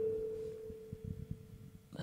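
A steady pure tone, fading away and stopping shortly before the end.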